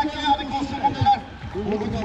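A man speaking in race commentary, with a brief pause about a second and a half in.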